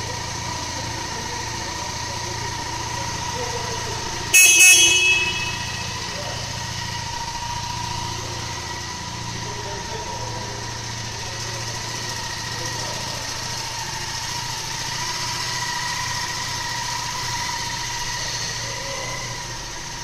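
Cruiser motorcycle engine idling steadily after a cold start, with one short loud horn beep about four seconds in.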